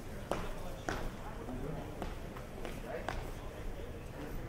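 Footsteps of several people walking on a hard stone floor, sharp irregular clicks of shoe heels, over a low background of indistinct voices.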